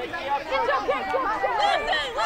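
Several voices talking and calling over one another in continuous overlapping chatter.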